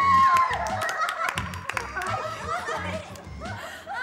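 Young women laughing and giggling over background music with a steady, evenly pulsing beat.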